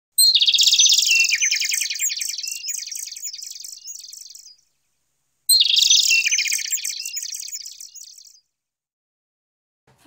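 Bird-chirping sound effect played twice: each time a fast, high twittering trill that steps down in pitch and starts loud, then fades over three to four seconds. The second starts about five and a half seconds in.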